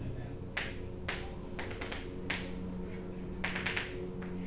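Chalk on a blackboard: a series of short sharp taps and scrapes as strokes and dashed lines are drawn, with a quick cluster of taps near the end.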